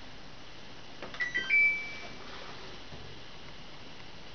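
Samsung front-loading washing machine powering on: a click of the power button about a second in, then its electronic power-on chime of a few short beeps ending in one longer, fading high tone.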